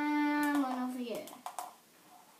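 A girl's voice holding a drawn-out, wordless vocal sound for about a second, level in pitch and then stepping down before trailing off, followed by two short clicks.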